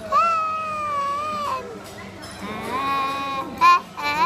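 A young girl singing a slow Vietnamese song in a drawn-out, affected style. She holds two long notes, pauses briefly, then sings a short, loud, higher note near the end.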